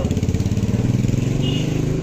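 A small motor vehicle's engine running close by, a steady low drone.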